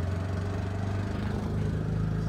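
Tuk-tuk (auto rickshaw) engine running steadily as it drives, heard from inside the open cabin: a low, even hum.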